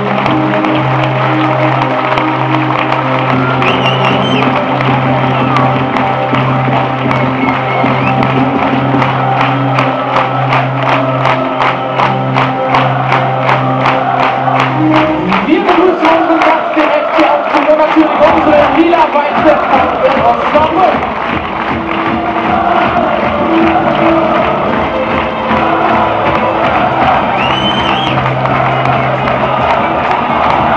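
Music played over a stadium's loudspeakers, with a large crowd cheering over it. About halfway through, the music's steady bass stops and the crowd grows louder.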